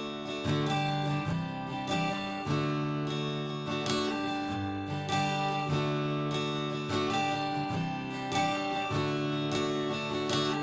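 Background music: acoustic guitar strumming in a steady rhythm.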